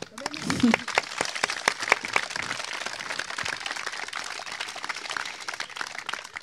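An audience clapping, a dense patter of many hands that eases slightly toward the end.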